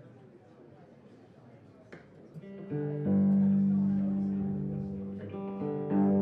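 Quiet room sound, then about two and a half seconds in an electric guitar begins playing: struck notes that ring on and slowly fade, with fresh notes coming in near the end.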